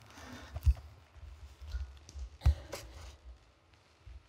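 Microphone handling noise: an uneven low rumble with two sharp knocks as a worn microphone is fiddled with by hand.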